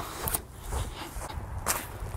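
Footsteps of a person walking outdoors, a few separate steps over a steady low rumble.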